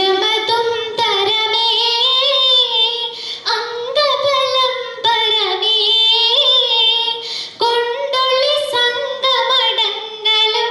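A schoolgirl singing a Mappila song solo into a microphone, unaccompanied, in phrases of long held notes with wavering ornamented turns.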